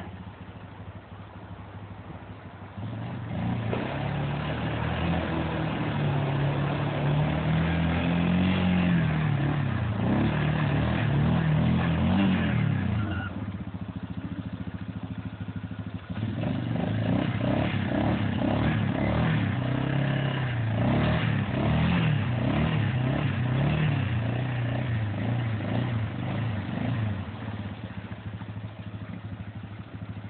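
Yamaha Grizzly ATV engine revving up and down under load as it is driven through deep river water. Its pitch rises and falls over and over, and it drops back quieter for a few seconds about halfway through.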